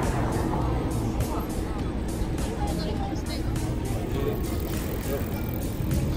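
Steady city street traffic noise, with an SUV driving past near the start, over quiet background music with a light steady beat.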